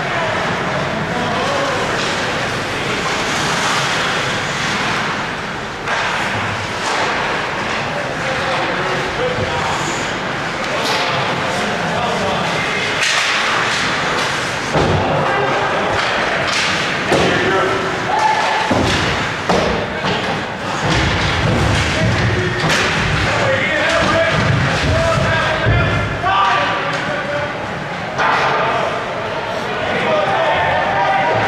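Ice hockey game in a rink: repeated thuds and slams from play against the boards, mixed with shouting voices of players and spectators.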